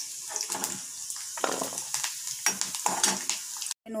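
Steel ladle scraping and clinking against a steel kadai while ridge gourd cubes sizzle in hot oil, stirred and scooped out once they are light brown. The sound cuts out briefly just before the end.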